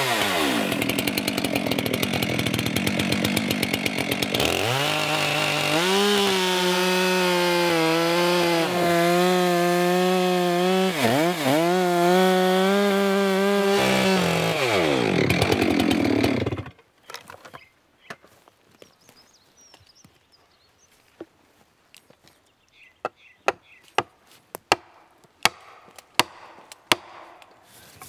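Chainsaw running at full throttle while making the felling back cut through a thick spruce trunk, its note steady under load with a brief dip about 11 seconds in. Near 15 seconds the revs fall and the saw stops abruptly. A series of faint sharp knocks follows near the end, as the first felling wedge is set in the cut.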